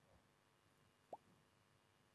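Near silence: faint room tone, broken once about a second in by a short, faint blip that rises in pitch.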